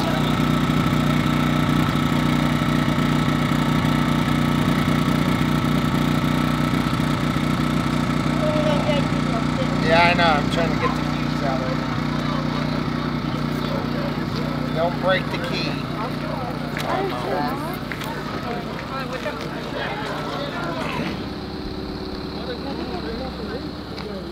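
A vehicle engine idling steadily under scattered voices. The engine sound changes and drops about 21 seconds in.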